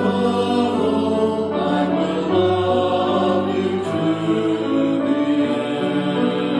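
Church choir singing slowly, in long held notes that move to a new chord every second or two.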